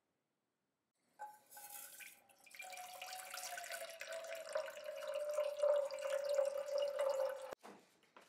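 Water poured from a bottle into an enamel saucepan: a steady splashing stream with a ringing tone that slowly falls in pitch and grows louder. It starts about a second in and cuts off suddenly near the end.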